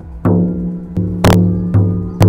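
Reindeer-rawhide frame drum, laced with leather string, struck four times. Each beat is a deep booming note that rings on until the next. The third beat, a little over a second in, is the loudest and sharpest.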